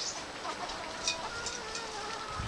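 A held hen making soft, drawn-out, level calls, with a few short high chirps.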